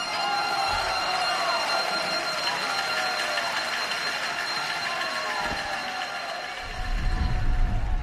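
A crowd applauding and calling out over music, with a deep rumble coming in during the last second or so.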